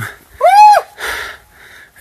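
A person's short high-pitched call, rising and falling, about half a second in, between several puffs of breath close to the microphone.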